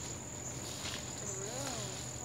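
Crickets singing in a steady, high-pitched trill, with a faint wavering voice-like sound in the second half.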